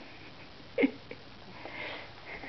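A woman's short closed-mouth laugh, a hummed 'mm', about a second in, then quieter breathy laughing near the end.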